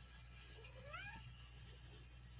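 Domestic cat giving one short, faint meow that rises in pitch, about half a second in.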